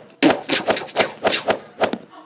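A quick, even series of sharp knocks, about four a second.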